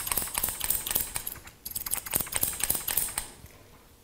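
Steel hair-cutting scissors snipping hair in rapid runs of cuts, with a short break in the middle. The snipping stops about three-quarters of the way through.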